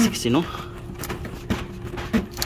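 Screwdriver knocking against metal engine parts while prying at a retaining clip: two short clicks about a second apart, over a faint steady hum.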